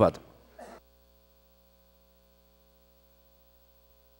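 The tail of a man's spoken word, then near silence with a faint, steady electrical hum made of several thin, unchanging tones.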